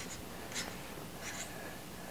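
Faint scratchy rubbing as an Apexel 6x20 monocular is screwed by hand onto its smartphone clip, with a couple of brief scrapes from the thread and handling.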